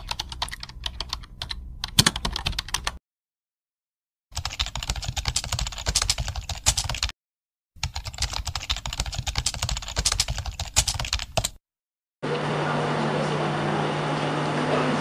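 Keyboard typing sound effect: rapid key clicks in three runs of about three to four seconds each, with short silent gaps between them. About twelve seconds in, the clicks give way to a steady low hum of room noise.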